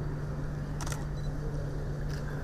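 A single camera shutter click about a second in, over a steady low electrical hum and room noise.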